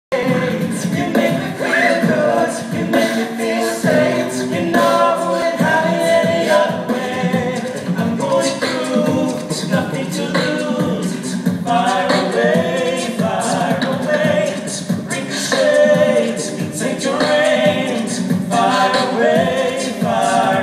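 A five-member a cappella group singing in harmony through microphones and the hall's PA, with vocal percussion keeping a steady beat.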